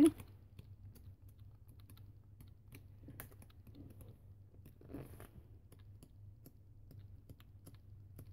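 Sheets of a pad of patterned scrapbook paper being flipped through one after another: soft scattered ticks and rustles of paper, with a slightly louder rustle about five seconds in. A faint steady low hum lies underneath.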